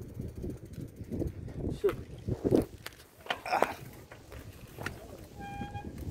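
Indistinct voices and phone-microphone handling knocks in outdoor ambience, with a short pitched tone about five and a half seconds in.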